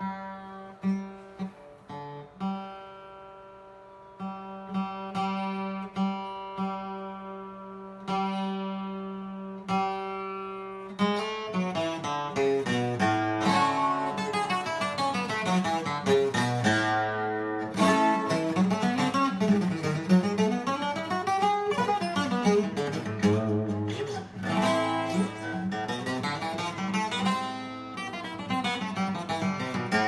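Fortaleza twelve-string requinto (acoustic) played solo: for about the first ten seconds, slow plucked notes and chords left to ring, then from about eleven seconds in, fast melodic runs climbing and falling across the neck.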